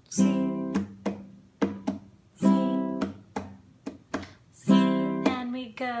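Nylon-string classical guitar strumming a C major chord in a slow, steady count. A stronger strum falls about every two and a half seconds, with lighter strokes between, each left to ring.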